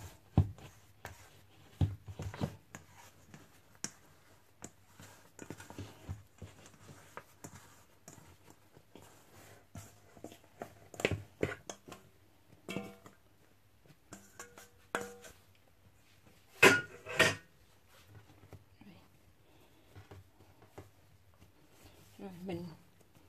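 Scattered knocks, taps and scrapes of hands working soft bread dough in a stainless steel mixing bowl, with the bowl tipped onto a steel countertop to turn the dough out. Two louder sharp knocks come about three-quarters of the way through.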